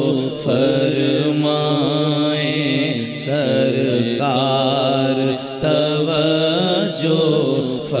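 Male voices chanting an Urdu naat, a lead voice holding long, wavering melismatic notes over a steady low held drone. The line breaks off briefly twice near the end.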